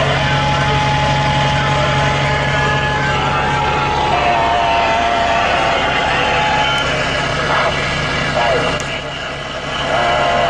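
Truck engine running steadily, heard inside the cab as a low drone. Over it a CB radio gives a steady whistle tone for the first few seconds, then a wavering one, and broken voice sounds later on.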